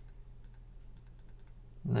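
Several soft, quick clicks of computer input (mouse and keys) over a low steady hum.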